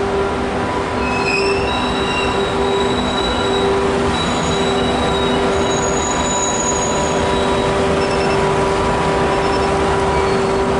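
Renfe class 269 electric locomotive rolling slowly past at close range, its motors giving a steady hum over the rumble of the wheels. From about a second in, high metallic squeals from the wheels join in, several pitches at once, fading out after about seven seconds.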